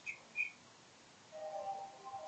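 Two short high-pitched chirps right at the start, a moment of near silence, then soft background music with sustained notes fading in partway through.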